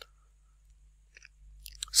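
Near-silent pause between spoken sentences: a low steady hum, a faint mouth click about a second in, and a breath just before the voice resumes at the end.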